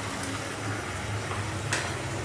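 Thick raw-mango and jaggery chutney simmering in a kadai on a gas burner while a spoon stirs it: a steady hiss with a low hum underneath. A single sharp clink of the spoon against the pan comes near the end.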